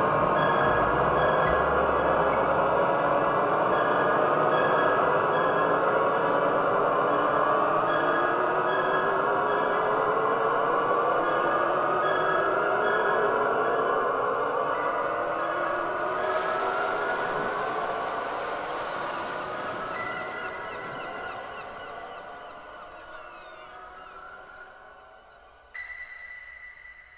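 Spacey ambient music: a thick drone of many slowly rising, gliding tones, with a steady pulsing high tone above it, fading out over the second half.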